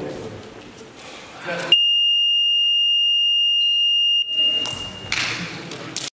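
A gym scoreboard buzzer sounds one long steady electronic tone, starting abruptly and lasting about two and a half seconds. It is the final buzzer ending the basketball game. The muffled noise of voices and play on the court is heard before and after it.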